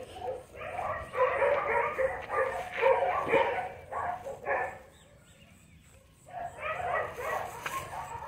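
Dogs barking in quick runs of short barks, falling silent for about a second around five seconds in, then barking again.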